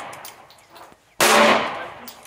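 A single 9×19 mm pistol shot about a second in, sharp and echoing off the range, with the fading echo of the previous shot at the start; the shots come slow and steady, about two seconds apart.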